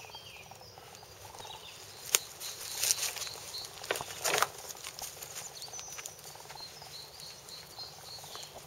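Scuffing and rustling on garden soil, bark mulch and dead leaves, with a few sharp crunches between about two and four and a half seconds in.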